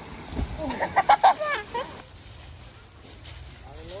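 A person laughing: a quick, high-pitched run of short bursts about a second in, which then trails off.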